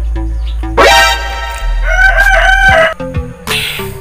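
A rooster crowing once, loud, starting about a second in and ending in a wavering, drawn-out note, over steady background music.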